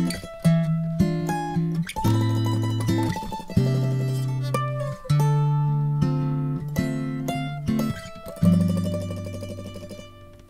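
Instrumental break on a picked mandolin over lower plucked-string chords. The chords change every second or so, each struck and then fading. The playing dies away near the end.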